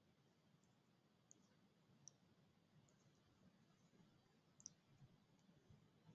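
Near silence: faint room tone with a few brief, faint clicks.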